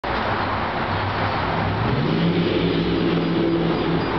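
Street traffic: a steady rush of noise under a vehicle engine's hum, which rises in pitch about two seconds in.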